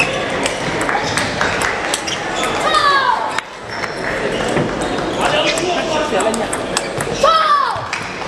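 Table tennis balls clicking sharply off bats and tables in a large hall, with a busy background of voices. A short cry falling in pitch about three seconds in, and a louder one near the end.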